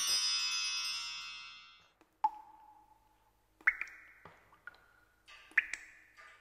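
A shimmering, glittering chime sound effect fades out over the first two seconds, then a few single struck notes ring out and die away, roughly a second apart.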